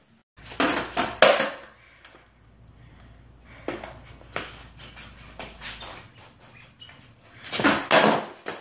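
Skateboard on a concrete floor: a quick run of sharp clacks from the deck and wheels hitting the concrete in the first second or so, a few lighter taps, then another burst of loud clacks near the end as the tail is popped for a flip trick.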